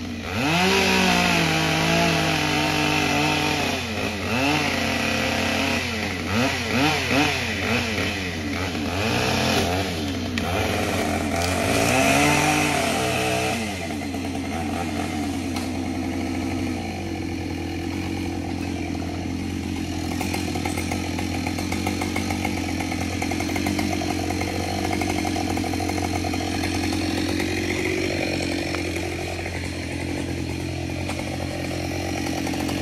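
Chainsaw revving up and down again and again as it cuts into the trunk of a dead tree during felling. From about halfway it runs at a steadier pitch.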